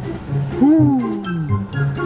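Background music with a loud, rough roar that starts about half a second in, rises briefly in pitch and then falls away over about a second.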